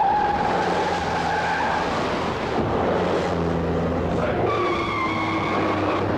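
Car tyres squealing as cars are driven hard, engines running underneath: one long squeal over the first two seconds, then another, higher squeal in the last second and a half.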